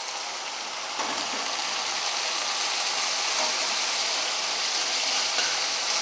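Hot ghee with garlic, ginger and green chilli paste and whole spices sizzling in a kadhai just after a spoonful of hot water is added to stop it sticking and burning. It is a loud, steady hiss that builds over the first second and then holds.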